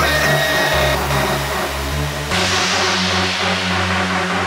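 Hard techno track in a beatless stretch: a sustained low bass drone with held synth tones, joined by a high rushing noise sweep a little over two seconds in.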